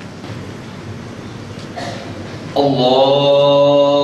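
A man's voice chanting in Arabic over a loudspeaker, starting suddenly about two and a half seconds in and holding one long note. Before it there is only the low murmur of the hall.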